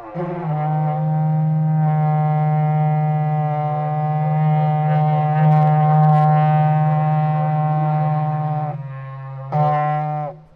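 Berrante, the Brazilian cowherd's ox-horn trumpet, blown in one long, low, steady note of about eight and a half seconds. It breaks off briefly, then sounds again in a short blast near the end.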